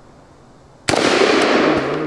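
A single shot from a Chinese Polytech AKS-762 semi-automatic rifle in 7.62×39mm about a second in, its report echoing and dying away over the following second.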